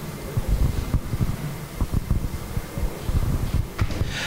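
Handling noise on a live microphone: irregular low rumble and short thumps, as the microphone is being passed for an audience question.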